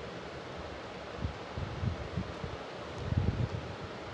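Soft rustling and a few dull low bumps as hands handle cloth stretched in an embroidery hoop and draw needle and thread through it, over a steady faint hiss.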